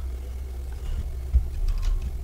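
A steady low hum on the recording, with a few soft knocks and clicks in the second half from a computer mouse and keyboard being worked at a desk.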